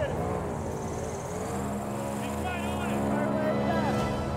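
Airboat engine and caged propeller running steadily under way, with brief voices heard over it.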